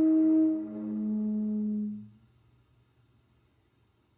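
Sweet birch didgeridoo drone, a sustained tone whose overtones shift as the player changes mouth shape. It stops about halfway through, leaving near silence.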